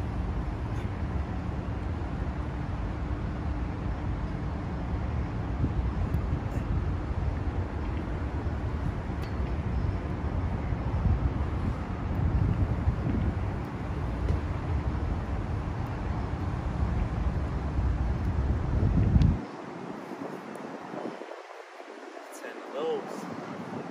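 Steady low outdoor rumble of city background noise, with the deep rumble cutting out abruptly near the end.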